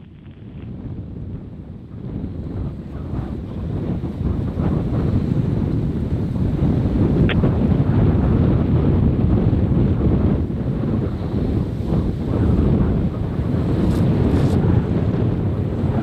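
Wind buffeting an outdoor microphone: a loud, low rumbling noise that builds over the first five seconds or so and then holds steady.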